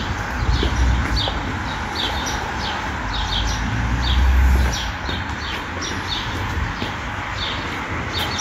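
Small birds chirping in short, sharp, repeated calls, about two a second, over a steady low rumble of city traffic that swells twice.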